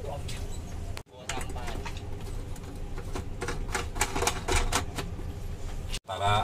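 A run of sharp clicks and taps as a Garmin fish finder display is handled and pressed on its console mount, over a steady low hum. The sound cuts out briefly about a second in.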